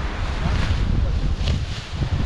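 Strong wind buffeting the microphone, a steady low rumble with a few brief gusts of hiss about halfway through and again near the end.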